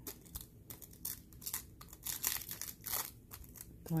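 A crinkled sheet of thin dichroic cellophane handled between gloved fingers, giving off irregular sharp crackles.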